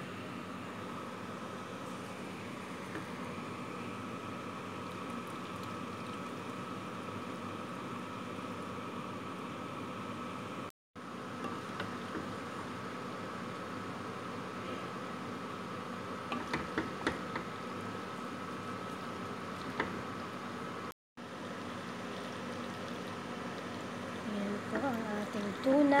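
A steady hum with a thin, even whine underneath the stirring of macaroni in a pan, with a few light taps of the wooden spatula against the pan about two-thirds of the way through. The sound cuts out to silence twice for a moment.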